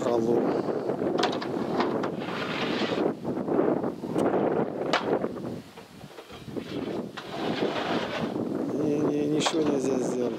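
Wind buffeting the camera microphone: a rough, steady rushing noise that drops away briefly about six seconds in, with indistinct voices beneath it.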